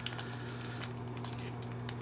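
Soft rustling and squishing of a foil trading-card pack worked between the fingers as it is pried open, over a steady low hum.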